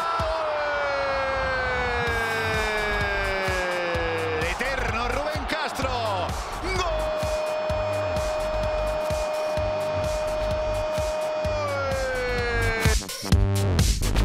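Spanish football commentator's long, drawn-out shout of "gol" after a goal: one held note that slides down, breaks briefly about halfway through, then is held level again and falls away near the end, with music underneath.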